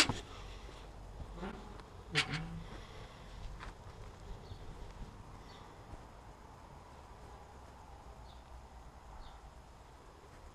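Iron gate being handled and shut, with a couple of metallic knocks and a short ringing clank about two seconds in. After that only a faint outdoor background remains.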